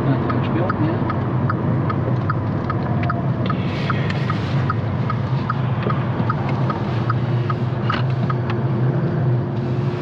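Car engine and road noise droning steadily inside the cabin, with the turn indicator ticking evenly about three times a second as the car turns.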